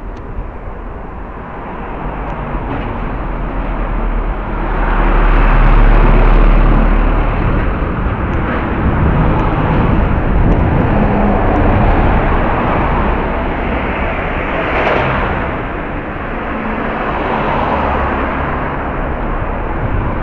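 Road traffic on a street, several vehicles going by, each swelling and fading, loudest about six seconds in with a deep rumble. Heard through the small, dull-sounding microphone of a pair of spy-camera glasses.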